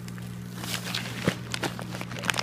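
A hand rummaging through coarse brown granules mixed with glassy shards inside a plastic sack, making irregular gritty crunching and crackling that starts about half a second in. A steady low hum runs underneath.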